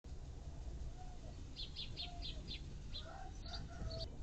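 Bird chirping: a quick run of five short high chirps about halfway through, with a few lower short calls scattered around it, over a steady low rumble.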